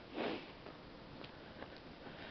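A single short sniff close to the microphone, a fraction of a second in.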